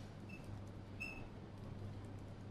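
Quiet room tone in a pause of a talk recording, with a steady low hum and two brief faint high squeaks, about a third of a second and a second in.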